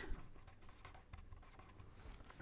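A pen scratching faintly on paper as words are written by hand.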